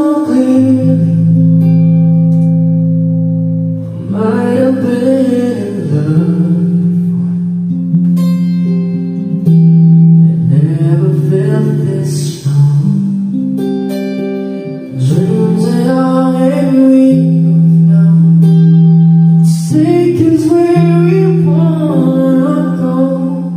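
Male voice singing a ballad over electric guitar chords, in long held notes and phrases with short breaks between them.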